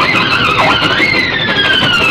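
Instrumental electric guitar music with sliding, bent notes. The pitch dips and comes back up about half a second in, then a long note slides slowly downward.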